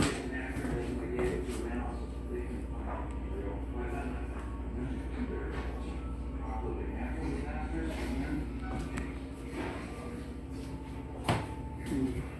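Indistinct talking in the background, too faint for any words to be made out, over a steady low hum that drops away about nine seconds in. A single sharp knock near the end.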